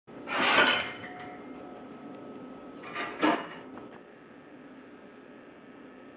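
Dishes and utensils clattering: a loud clatter in the first second, then two sharp clinks about three seconds in.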